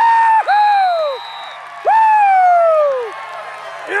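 A person close to the microphone whooping three times, long high "woo" calls that each fall away in pitch, over a crowd cheering and applauding a touchdown.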